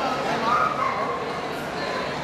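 A dog barking amid the steady chatter of a crowd of people.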